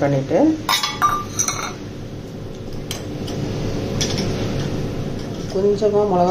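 A steel spoon clinking against stainless-steel kitchen vessels: a quick run of sharp clinks with brief metallic ringing about a second in, then a few lighter taps.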